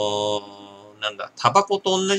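A man's voice holding one long, flat, low-pitched vowel or hum that stops shortly after the start, followed from about a second in by mumbled speech.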